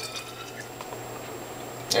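Orange juice being poured from a glass measuring cup into a glass bottle: a quiet, steady pour with no sharp knocks.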